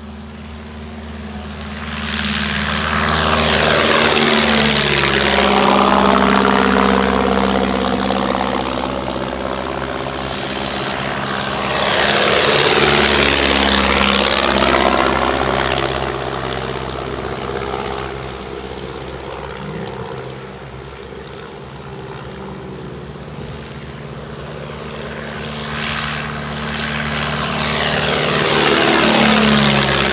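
Several de Havilland Tiger Moth biplanes' four-cylinder Gipsy Major engines and propellers flying low past one after another. Three loud passes, about five seconds in, about thirteen seconds in and near the end, each with the engine note dropping in pitch as the aircraft goes by.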